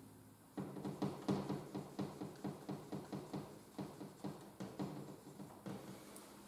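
Whiteboard marker drawing a zigzag line: a quick, even run of short scratching strokes, about four a second, starting about half a second in and stopping near the end.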